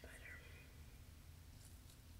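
Near silence: faint room tone, with the end of a softly spoken word at the very start.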